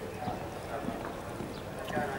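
Hoofbeats of a show-jumping horse cantering on a sand arena, a run of dull irregular thuds.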